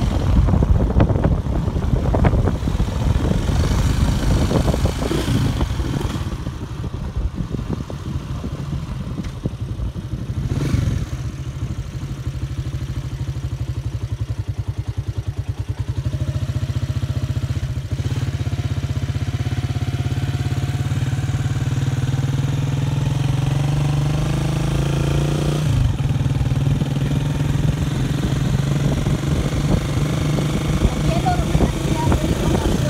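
Motorcycle engine running at low road speed, its note rising and falling with the throttle, then dropping suddenly near the end.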